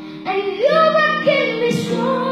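A young boy singing into a microphone over piano accompaniment: his voice comes in about a quarter second in, slides up and holds a note over steady piano chords.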